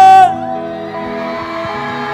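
A man's amplified voice holds the last syllable of an announcement for about a quarter second, then soft sustained chords play through a stadium PA. A large crowd is faintly audible beneath the chords.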